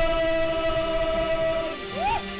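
A held chord of steady, horn-like tones at the end of a radio jingle, lasting most of two seconds; the upper notes stop near the end as a short rising glide begins.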